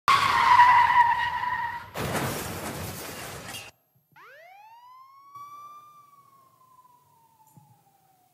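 Recorded street noise played as a sound clip: a loud steady blaring tone for about two seconds, a burst of harsh noise, then a police siren wail that sweeps up in pitch and slowly falls as it fades out.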